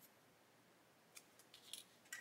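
Near silence, with a few faint, short clicks in the second half as small plastic model kit parts are handled and pressed together.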